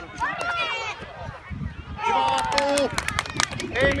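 Shouting and cheering from the touchline at a youth football match. There are high-pitched voices in the first second, then a long drawn-out shout about two seconds in.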